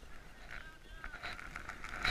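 Faint hiss of skis sliding over snow, with a thin, wavering high tone lasting well under a second about half a second in.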